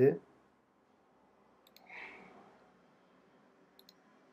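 A few faint computer-mouse clicks near the end, as a button in the app preview is clicked. About halfway through, a single soft, short breath-like hiss.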